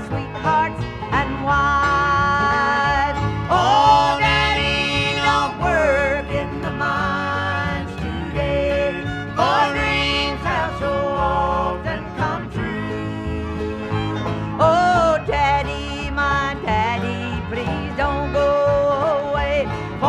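Bluegrass band music: acoustic guitar and banjo playing a country song over a steady bass, with a melody line sliding in pitch on top.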